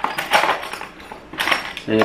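Metal hand tools clattering and clinking against each other as they are rummaged through in a toolbox, in a run of irregular rattles.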